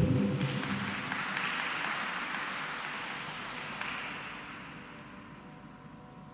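Audience applauding a figure skating performance, the clapping fading away over several seconds.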